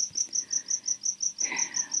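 Steady high-pitched insect chirping, an even train of about seven short pulses a second.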